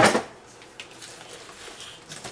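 Things being handled off to the side: a loud knock or clatter right at the start, then faint scattered taps and rustles.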